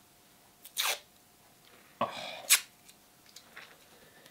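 Adhesive tape being picked at and peeled off its roll, with the end refusing to come free cleanly. A short rasp about a second in falls in pitch, a brief sharp rip comes halfway through, and faint ticks follow near the end.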